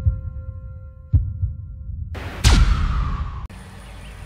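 Cinematic intro sound design: deep booming hits about a second apart over a held tonal drone, then a loud whoosh sweeping downward in pitch. It cuts off abruptly about three and a half seconds in, leaving faint steady background noise.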